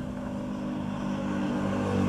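A motor engine running steadily in the background, a low hum that slowly grows louder.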